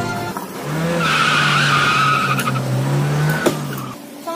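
Small motor scooter riding up and stopping. It runs with a steady low drone, with a high squeal for about two seconds as it brakes, and its sound dies away just before the end.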